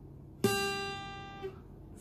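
A single note plucked on the high E string of a Yamaha APX 500 II acoustic-electric guitar about half a second in. It rings for about a second and dies away.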